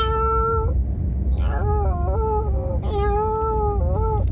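A man imitating a cat with his voice: three drawn-out, high meows over the steady low rumble of a car driving. His throat is hoarse, by his own account.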